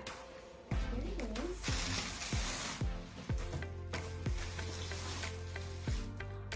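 Wrapping paper and tissue paper rustling and crinkling as a gift-wrapped box is opened and unpacked, loudest from about two seconds in, with a few sharp clicks. Soft background music plays underneath.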